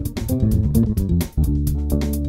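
Music Man StingRay EX electric bass played with the fingers, several notes ringing together as chords, with the mid turned up and the treble cut. A drum-machine backing loop keeps an even beat under it.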